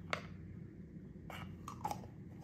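Plastic jar lid being handled and set onto a peanut butter jar over a beater shaft: a few light clicks and scrapes of plastic, one just after the start, a couple about a second and a half in and a few near the end.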